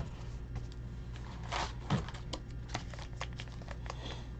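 Wrapped trading card packs being handled and lifted out of a cardboard hobby box: light rustling and crinkling with small scattered clicks.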